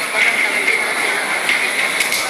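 Boxing-hall ambience: a murmuring crowd under a steady high-pitched hum, with a few faint sharp knocks.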